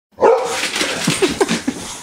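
Boxer dogs barking while play fighting, wound up from being kept in: a loud bark just after the start, then a quick run of short, higher calls.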